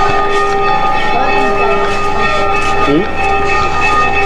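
A steady droning tone held at several pitches at once, unbroken and fairly loud, with brief snatches of voices over it.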